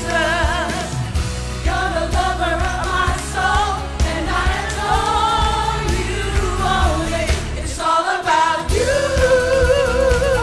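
A church praise and worship team singing a gospel song: women's voices holding notes with vibrato over instrumental accompaniment. The low accompaniment drops out briefly about eight seconds in, then comes back.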